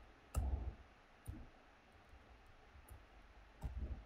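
Computer keyboard being typed on: a few scattered keystroke clicks, with heavier clusters about half a second in and near the end.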